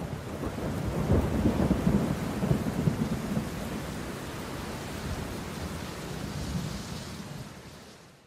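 Thunderstorm: a low rolling rumble of thunder, strongest in the first few seconds, over a steady hiss of rain, fading out near the end.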